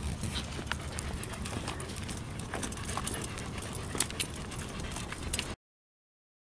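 Low rumbling noise from a handheld camera outdoors, with many scattered light clicks and taps. It cuts off abruptly about five and a half seconds in.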